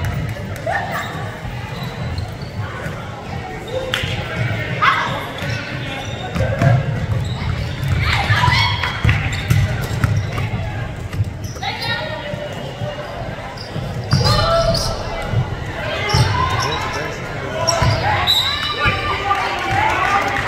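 Basketball being dribbled on a hardwood gym floor, repeated thuds echoing in the hall, with players and spectators calling out over it.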